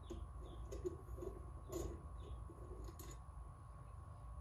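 Faint scattered clicks and small taps of a screwdriver and small screws being handled while parts are fitted to a laser engraver's aluminium frame, with a couple of brief faint squeaks and a steady low hum underneath.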